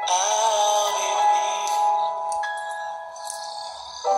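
A man singing with music: a long sung note that wavers at first, then holds steady and slowly fades over the last couple of seconds.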